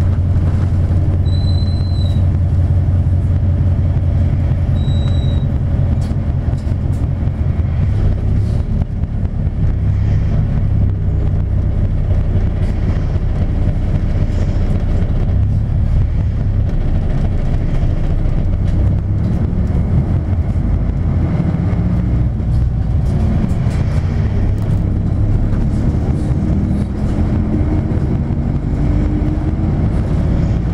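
Inside a 1999 Isuzu Cubic KC-LV380N diesel city bus under way: a steady low engine rumble with road noise and small knocks and rattles, the engine note climbing in the last few seconds. Two brief high squeaks about two and five seconds in.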